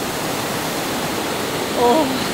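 Steady rushing of a mountain stream pouring over small rocky cascades below a waterfall. A brief voice cuts in near the end.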